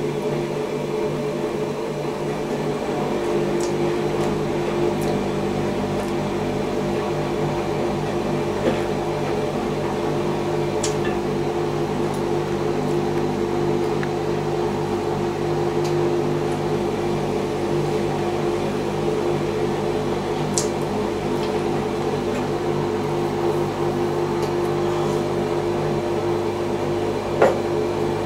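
Steady mechanical hum from a household appliance, holding several tones, with a few faint clicks now and then.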